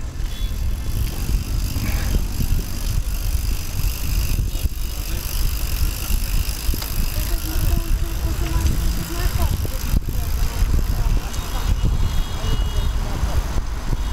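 Wind buffeting the microphone and the rumble of riding a bicycle along a city pavement, with car traffic on the road alongside.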